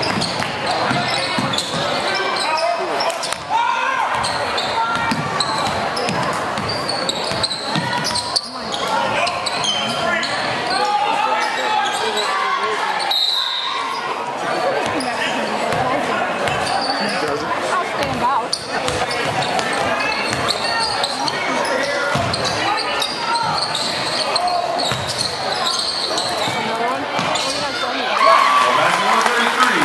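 Spectators in a large school gymnasium talking over one another during a basketball game, with the ball bouncing on the hardwood court now and then.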